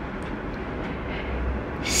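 Steady background hum and hiss, a low rumble with an even noise above it, heard in a gap between spoken words.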